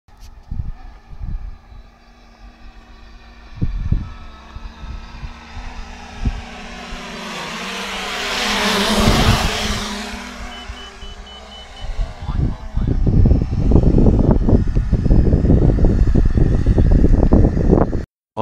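A multicopter drone's electric motors and propellers buzzing as it flies past overhead, rising to a peak about nine seconds in and then falling away. From about twelve seconds on, heavy low rumbling buffeting, like wind on the microphone, takes over.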